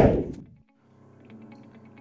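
A whoosh of noise falling in pitch fades out within the first half second. After a short silence, quiet background guitar music comes in.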